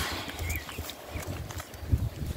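Rustling and irregular low thumps as fleece animals crowd and brush against the microphone, with a brief faint high squeak about half a second in.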